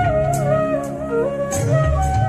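Bamboo transverse flute playing an ornamented melody over a backing track with bass and percussion. The tune steps down in small wavering turns to its lowest note just past the middle, then climbs back to a held note near the end.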